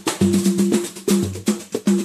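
A live pagode band playing an instrumental groove with no vocals: short, choppy chords and bass notes over percussion in a quick rhythm.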